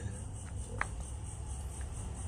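Crickets chirping in an even, pulsing rhythm over a low steady background hum, with one faint click a little under a second in.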